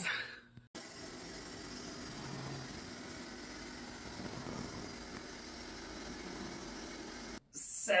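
A steady, even rushing noise that starts abruptly just under a second in and cuts off abruptly shortly before the end.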